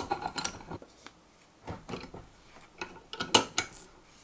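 Drill press vise being screwed closed: scattered metal clicks and knocks from the screw and sliding jaw, with the sharpest clicks about three and a half seconds in.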